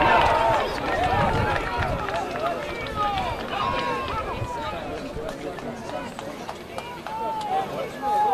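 Many overlapping shouts and calls from rugby players and sideline spectators during open play, loudest in the first second.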